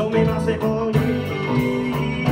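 A small live band playing: electric guitars and electric bass over a drum kit keeping a steady beat.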